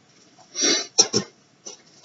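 A man clearing his throat: a short rasp, then two quick coughs about a second in.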